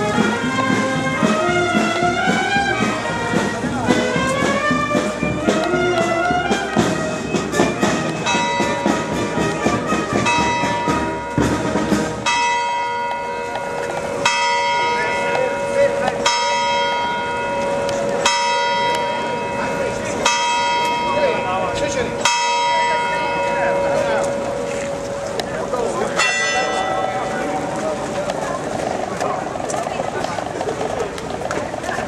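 A melody plays for about the first twelve seconds, then a church bell tolls, one stroke about every two seconds, each stroke ringing on after it is struck.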